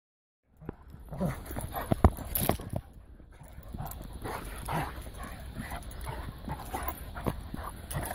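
Two dogs play-fighting, giving short vocal calls scattered through the tussle, with a few sharp knocks.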